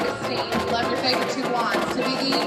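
Marching band playing, with quick percussion strokes and mallet percussion over held tones.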